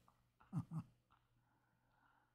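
A man's short, soft chuckle: two brief voiced pulses about half a second in, with near silence around them.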